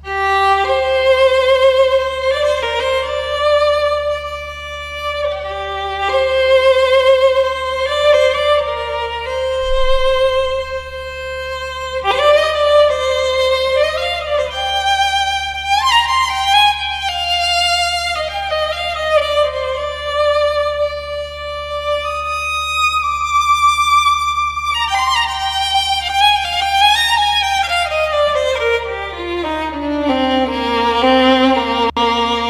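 Virharmonic Bohemian Violin, a sampled solo violin, played live from a MIDI keyboard in its Improv articulation with its built-in reverb: a slow melodic line of sustained, vibrato-laden notes. Near the end it falls in a descending run to low notes.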